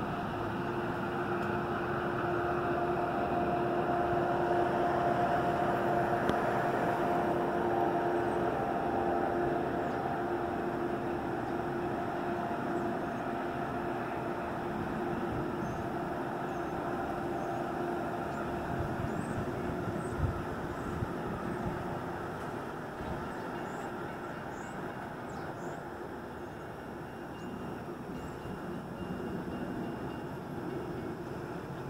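Metra commuter train pulling away: a steady engine hum over a rumble, loudest in the first several seconds, then slowly fading as the train recedes.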